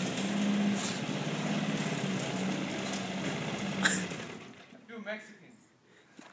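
Small gasoline walk-behind lawn mower engine running steadily while being pushed, then a click about four seconds in as the engine shuts off and winds down to a stop.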